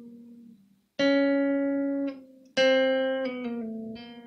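Guitar playing a jazzy lick slowly, note by note: a note fades out, then two sharply plucked notes ring about a second and a half apart, the second followed by a short run of notes stepping down in pitch that rings on.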